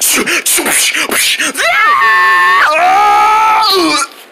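A person's high-pitched, drawn-out wail, held for about two seconds, dropping in pitch partway through and sliding down at the end, voiced as a cartoon character's cry. It is preceded by a second and a half of jumbled shouting and scuffling noise.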